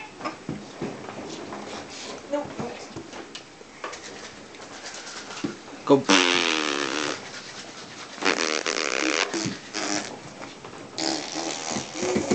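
Baby blowing raspberries, buzzing her lips to imitate a race car engine. The longest and loudest buzz comes right after a spoken 'Go' about six seconds in, and shorter buzzes follow near the end.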